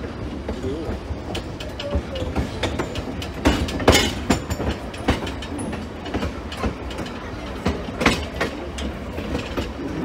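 Railroad car wheels rolling slowly over jointed track and through a switch, with a steady low rumble and irregular clicks and clanks. The clanks are loudest about four seconds in and again near eight seconds.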